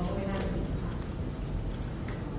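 Speech: a person speaking Thai into a microphone, trailing off after the first half second, over a steady low room hum.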